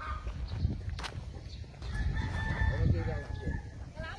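A rooster crowing once: one long held call starting about two seconds in, over a steady low rumble.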